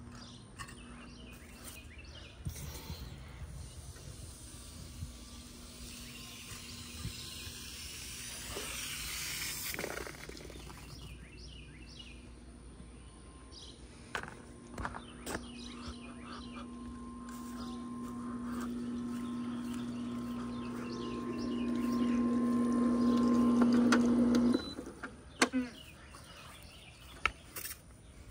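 A motor running with a steady hum that grows louder over several seconds and then cuts off suddenly, followed by a couple of sharp clicks.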